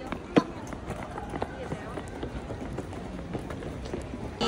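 Footsteps of a few people walking on stone paving, with faint voices in the background and one sharp click about half a second in, the loudest sound.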